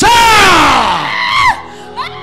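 A woman screaming into a microphone: one long, high wail that falls in pitch and lasts about a second and a half, then a brief catch of breath near the end.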